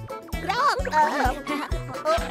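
Upbeat children's cartoon theme song, with a steady bass beat under high, cartoonish singing voices.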